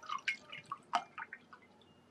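Faint, irregular clicks and drip-like ticks, about a dozen in the first second and a half, then fading to quiet room tone.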